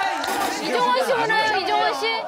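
Several people talking over one another, lively chatter.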